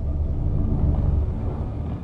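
Low, steady rumble from a TV drama's soundtrack: a dark ambient drone under a tense, quiet scene.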